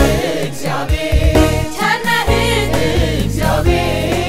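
Ethiopian Protestant gospel song (mezmur): a choir singing together with a lead vocalist, over a backing band with a strong bass and steady beat.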